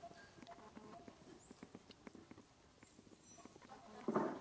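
Near silence: faint outdoor background with scattered soft, irregular clicks and ticks.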